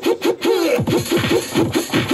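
Portable electronic keyboard played in a synth voice: a fast, even run of short notes, about seven a second, each swooping down in pitch.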